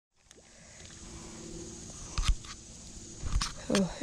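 Faint outdoor background fading in at the start, broken by two sharp knocks, about two and three and a half seconds in.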